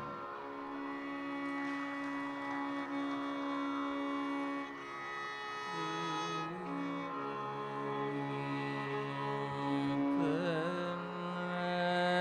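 Carnatic concert music, slow and without drum strokes: long held notes with gliding, wavering ornamental bends over a steady drone.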